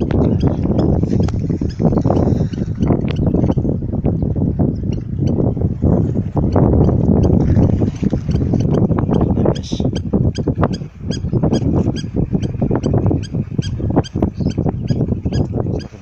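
Wind rumbling on a phone microphone outdoors, mixed with irregular knocks and crunches of footsteps and handling on stony ground.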